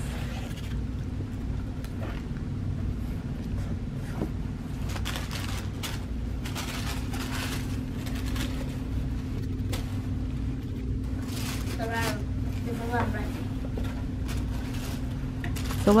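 Cardboard box lid and tissue paper rustling and crinkling now and then as a clothing box is opened and the paper wrapping is folded back, over a steady low hum.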